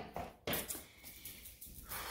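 Light handling noise from a person moving: a couple of soft knocks in the first half second, then a faint rustle that starts near the end.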